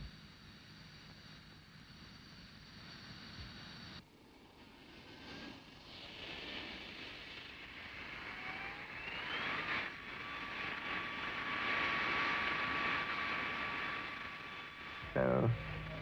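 Twin Turbo-Union RB199 turbofan engines of the Panavia Tornado prototype running on the ground. A faint steady high whine changes abruptly about four seconds in to engine noise whose whine rises in pitch, then holds steady as the jet noise grows louder.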